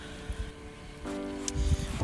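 Background music: quiet at first, then sustained chord tones come in about a second in, with a few faint low thuds beneath.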